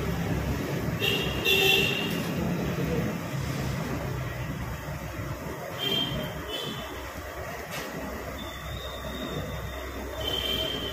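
Steady sizzle of medu vada deep-frying in a kadai of hot oil, under street traffic noise with short vehicle-horn toots about a second in and again around six seconds.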